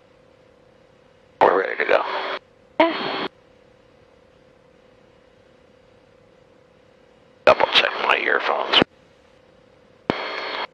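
Speech over an aircraft headset intercom and radio: three short bursts, each cut off abruptly by the squelch, with a faint steady hum in the gaps and the engine kept out by the intercom.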